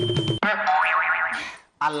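Electronic background music with a beat cuts off abruptly, followed by a wavering, rising-and-falling vocal sound lasting about a second. Speech begins near the end.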